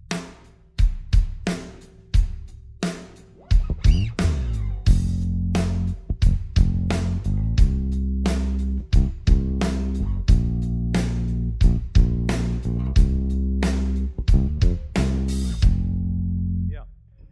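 Drum kit playing a simple, slow groove of kick and snare hits. About three and a half seconds in, an electric bass guitar joins, holding low notes that lock in with the kick drum.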